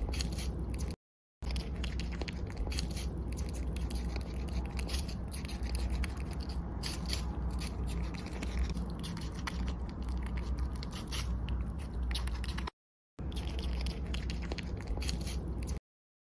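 A young squirrel nibbling food: a run of fine, quick clicks and scrapes over a low steady rumble. The sound drops out abruptly twice, about a second in and again near the end.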